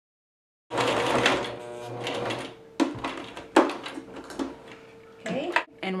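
Electric home sewing machine running as it top-stitches along the seam where a fabric cuff joins the denim leg. It cuts in suddenly about a second in and runs for about two seconds, followed by two sharp clicks.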